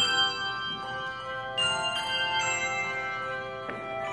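Handbell choir ringing a hymn tune in a church: chords of handbells struck a few times, each left ringing on into the next.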